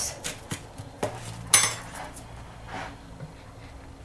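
A metal spoon pressing a crumbly biscuit base into a paper-lined metal slab pan, with scattered scrapes and clicks of spoon against pan. The loudest knock comes about a second and a half in.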